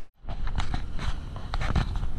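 Wind and handling noise on a GoPro action camera's microphone, with irregular scuffing knocks of footsteps on rock.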